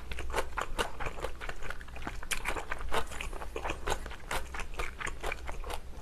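A person chewing a mouthful of food close to the microphone: irregular quick mouth clicks and smacks, several a second.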